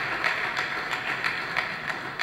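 Audience applauding: a dense, even patter of many hands clapping at once.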